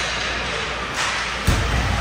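Ice hockey play: skate and stick noise on the ice, with a sharp, loud thud about one and a half seconds in.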